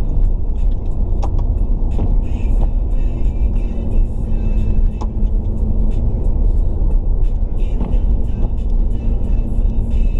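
Steady low rumble of a car's engine and tyres on a wet road, heard from inside the cabin, with a steady hum and scattered sharp clicks.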